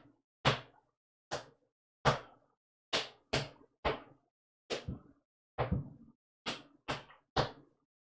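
Sneaker soles striking a concrete floor in a clogging double toe step: about a dozen sharp taps at an uneven, slow pace, some in quick pairs.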